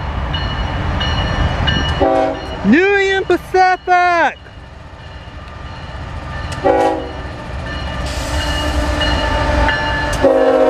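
Diesel locomotive horn sounding a short blast about two seconds in and another near seven seconds, over the rising rumble of the approaching freight train. Between them, about three to four seconds in, comes a loud, wavering, high call in several pieces. Near the end, a hiss of wheels and train noise swells as the locomotive passes.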